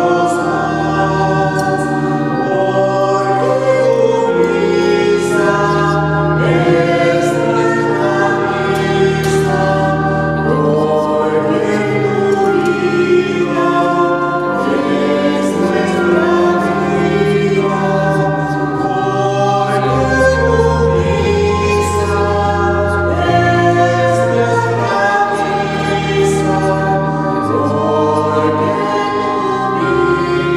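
A choir singing a slow sacred hymn with held notes and chords over a stepping bass line: the offertory song of a Catholic Mass.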